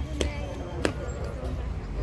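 Two sharp taps, about two-thirds of a second apart, over a steady low rumble.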